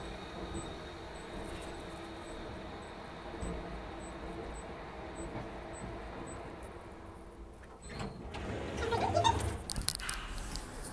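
Steady hum inside a moving elevator car, with faint high ticks about twice a second. Louder knocks and rustling come in the last two seconds.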